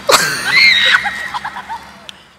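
A high-pitched human scream. It starts suddenly and loudly, holds a shrill note, and falls away about a second in, followed by a few short, weaker cries.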